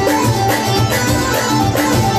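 Live Moroccan chaabi music: an electronic keyboard playing the melody over a steady, fast percussion rhythm.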